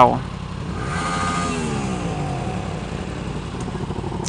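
Motorcycle engine running in traffic, its revs falling steadily for about a second and a half as it slows, over a steady background of engine and road noise.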